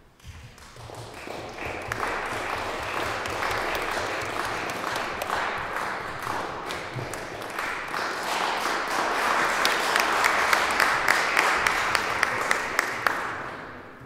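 Audience applause, building up in the first two seconds, swelling again later with a few single sharp claps standing out near the end, then dying away.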